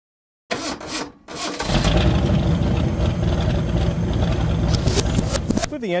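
A car engine starting: a short burst of sound, a brief pause, then the engine catching about a second and a half in and running loudly and steadily.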